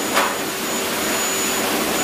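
Pet grooming dryer blowing a steady rush of air, with a thin high whine and a brief louder swell just after the start.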